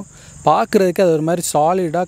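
A man talking over a steady, high-pitched chirring of crickets.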